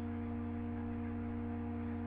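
Steady electrical hum: a low drone with a few higher constant tones, unchanging throughout.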